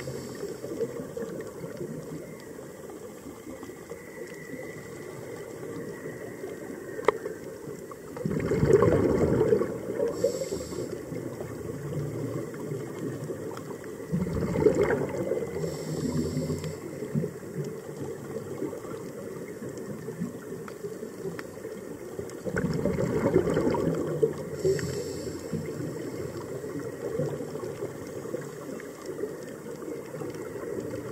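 A scuba diver breathing through a regulator underwater. Three exhalations each send a rushing, gurgling burst of bubbles lasting about two seconds, roughly a third of the way in, halfway and three quarters through. A short high hiss of inhaled air follows each one, over a steady low underwater background.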